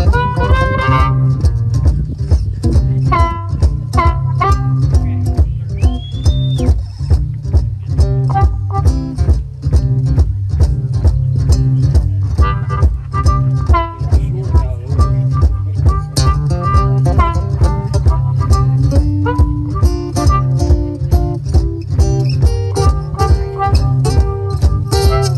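Acoustic blues boogie: a Cole Clark acoustic guitar plays a driving boogie rhythm over a steady, evenly spaced low beat, while a harmonica plays bending lines over it.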